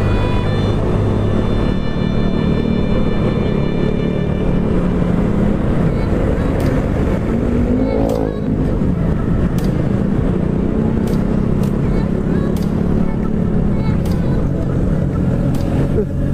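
Motorcycle engine running steadily as the bike is ridden along a road, with wind and road noise on a bike-mounted camera. The engine note rises and then falls about eight seconds in.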